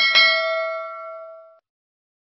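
Notification-bell 'ding' sound effect of a subscribe-button animation: a bright chime struck twice in quick succession, ringing out and fading over about a second and a half.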